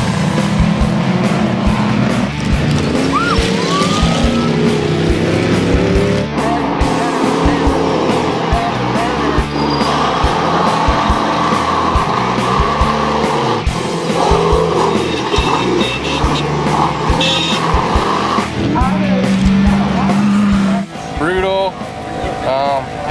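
Ultra4 off-road race cars' engines revving and running at speed, mixed under a music track with a steady beat.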